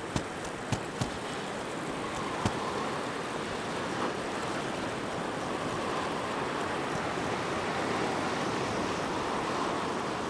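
Ocean surf washing against a rock ledge: a steady rush of water that swells slightly toward the end, with a few light clicks in the first couple of seconds.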